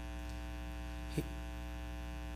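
Steady electrical mains hum with many overtones from the sound system, with one faint short sound a little past halfway.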